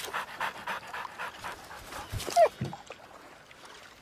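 Cartoon dog panting in quick rhythmic breaths, about four a second, with a short falling squeak about halfway through before the breaths die away.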